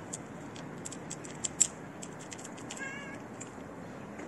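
A cat gives one short, wavering meow about three seconds in, over a run of sharp clicks and ticks, the loudest about one and a half seconds in.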